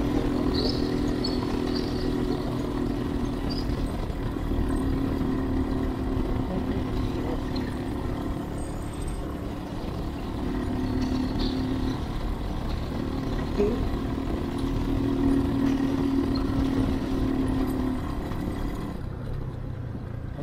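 Motorcycle engine running steadily while riding, heard from a mic inside the rider's helmet over wind and road rumble. The engine note holds with small shifts in pitch, and there is a short thump about two-thirds of the way through.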